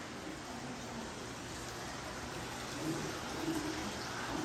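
Steady hiss of a large indoor hall's room tone, with faint distant voices about three seconds in.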